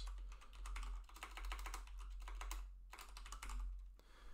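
Typing on a computer keyboard: a rapid run of key clicks, with a brief pause a little before the end.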